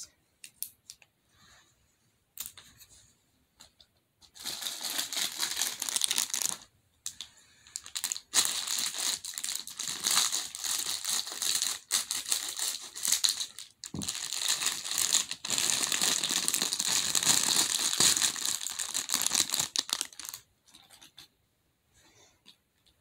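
Plastic bag crinkling and rustling while fidget toys are rummaged through, in a short burst and then a longer stretch with brief pauses and a few sharp clicks.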